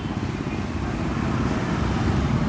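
A steady low rumble of background noise with no distinct strokes or events.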